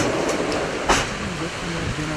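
Two sharp knocks about a second apart as a body is loaded into the back of a funeral van, over the voices of several men and a steady background hum.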